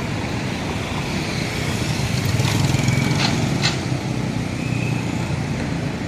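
Street traffic, with motorcycles and cars driving past: a steady rumble of engines and tyres, and a few brief sharp sounds about halfway through.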